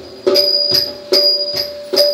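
Southern Thai Nora ensemble percussion keeping a steady beat of about two strokes a second. Each stroke leaves a bright metallic ring, over a steady held tone.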